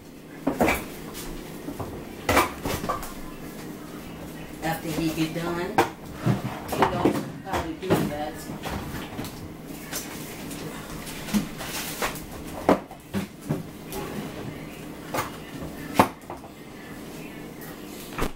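Kitchen clatter of cupboard doors and pots and dishes being handled: a string of sharp knocks and clacks at irregular intervals, the loudest about two seconds before the end, over a steady low hum.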